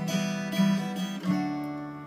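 Acoustic guitar strumming chords of a repeating G, B minor, E minor, D-over-F-sharp progression. The chords ring between strokes, and the harmony shifts to a new chord with a lower bass note about a second and a quarter in.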